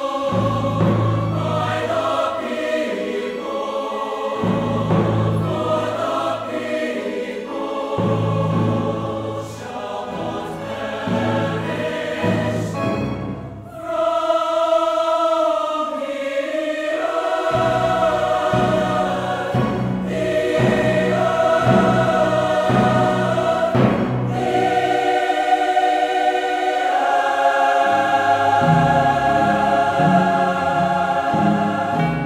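Large mixed choir singing sustained chords in parts, with instrumental accompaniment whose low notes sound every few seconds. The music drops away briefly about halfway through, then the choir comes back louder.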